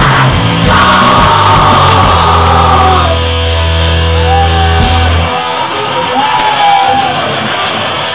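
Punk band playing live: loud electric guitars and drums under a shouted lead vocal. About five seconds in the deep bass drops out, leaving guitar and voice.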